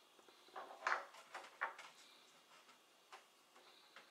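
Faint clicks and soft taps of hands handling a raw meatball on a wooden cutting board, a handful of short sounds, the loudest about a second in.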